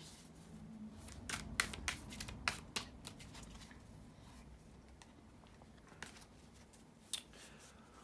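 Tarot cards being shuffled by hand: a run of soft, quick card clicks over the first three seconds, thinning to a few faint taps later.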